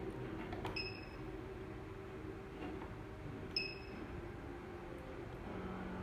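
Two short electronic beeps from a 4x4 HDMI matrix switcher, about three seconds apart, each marking a switching command it has received over RS-232 as the wallplate's P1 and P2 programming buttons are pressed.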